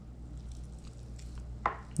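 Hands pulling and tearing meat off a roasted chicken carcass: faint wet squishing with a few small clicks.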